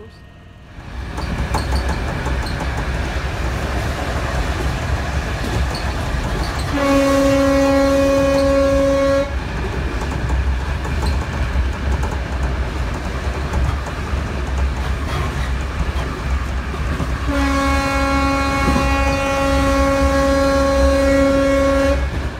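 Passenger train running, heard from inside the carriage: a steady low rumble, with two long blasts of a train horn, one of about two seconds some seven seconds in and a longer one from about seventeen seconds to the end.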